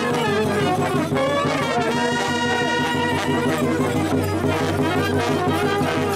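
Romanian brass band (fanfară) playing a lively folk tune for the goat dance, with a note held steady about two seconds in.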